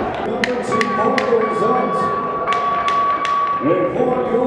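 Arena crowd hubbub of overlapping voices, broken by about seven sharp taps, with a steady high tone that comes in under a second in and holds through the rest.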